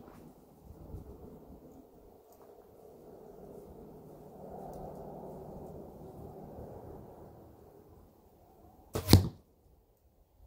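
A single sharp thwack about nine seconds in: an arrow from a carbon-fibre compound bow striking the straw-bale target. A faint low background hum runs beneath it.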